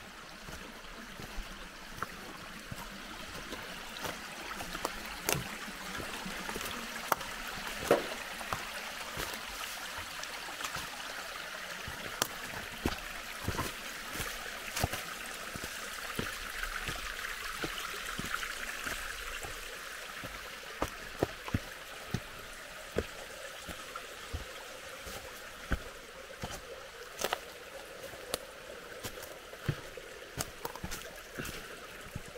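A small mountain stream trickling steadily over rocks, with irregular clicks of footsteps on a stony trail.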